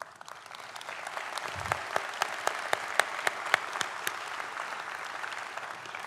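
Audience applauding: the clapping swells over the first second, then holds steady, with single sharp claps standing out from the mass.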